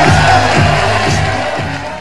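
Muay Thai ring music: a wavering, reedy melody over drum strokes, with crowd noise beneath, fading out near the end.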